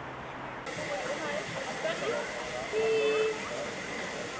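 Narrow-gauge steam locomotive hissing steam, a steady hiss that starts about a second in: the boiler is at working pressure. A short steady tone sounds near three seconds in.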